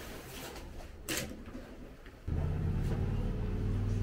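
Gas grill being lit: a single click about a second in, then the burners catch just after two seconds with a sudden, steady low rumble of gas flame.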